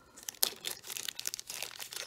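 Small clear plastic jewelry bag crinkling as fingers handle it, in a run of quick irregular crackles that begins about half a second in.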